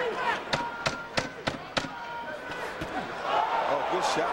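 Arena crowd noise with a quick run of five sharp smacks, about a third of a second apart, between half a second and two seconds in.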